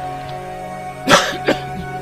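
Sustained background music with held tones; about a second in, a man coughs twice, the first cough loud and the second shorter.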